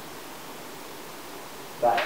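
Steady, even background hiss with no other event, then a man's voice starts near the end.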